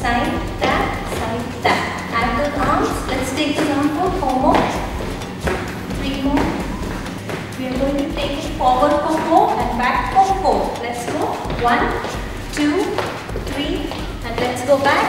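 A woman's voice talking throughout, over the thuds and taps of trainer-clad feet stepping on a wooden studio floor during an aerobics routine.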